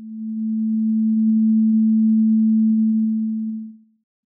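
Synthesized sine-like tone from the Rail Bow controller's Max/MSP "Theremin" mode: one steady note at about 220 Hz (the A below middle C) that swells in, holds for about three seconds and fades out near the end.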